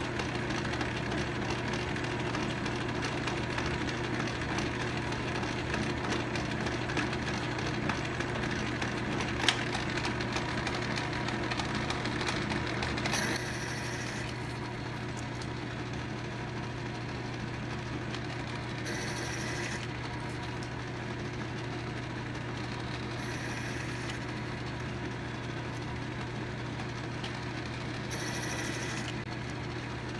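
A Logan 10-inch metal lathe running steadily while single-point threading internal 8 TPI threads in aluminum. Short higher-pitched cutting sounds come every five seconds or so as the tool makes its passes, with one sharp click about nine seconds in.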